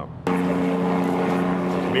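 Helicopter flying overhead: a steady hum of constant tones over a wide hiss, starting suddenly just after the beginning.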